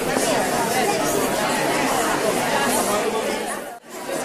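Audience chatter: many people talking at once in small groups, a steady hum of overlapping conversation that cuts out briefly near the end.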